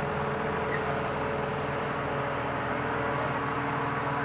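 Tractor-drawn air blast orchard sprayer running steadily while spraying: the rush of its fan with a steady hum from the machinery underneath.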